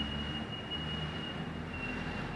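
Steady low hum and hiss of an old tape recording of a room, with a faint thin high whine held throughout.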